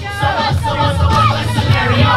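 Boom-bap hip hop track playing loudly with a heavy bass beat, and crowd voices shouting over it to hype the dancer.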